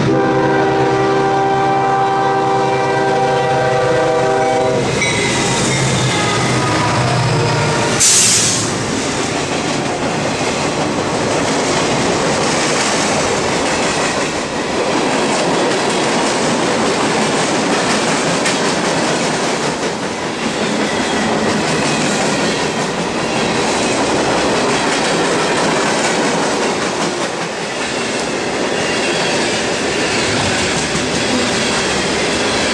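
Freight train's locomotive air horn sounding one long chord for about five seconds. A sudden loud burst follows about eight seconds in, then a string of freight cars rolls past with steady wheel clatter on the rails.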